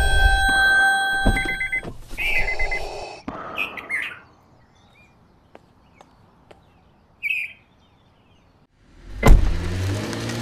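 Car door shutting with a sharp slam near the end, the loudest sound here. Before it, the opening seconds hold a steady chord of high tones, and a few short bird chirps come through a quiet stretch.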